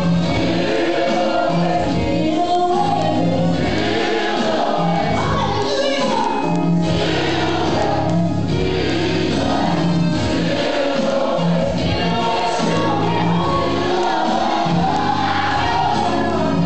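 Recorded gospel choir song, voices singing over a steady bass line.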